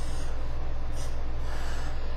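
Marker strokes on paper, heard as short scratchy hisses about a second in and again near the end, over a steady low hum.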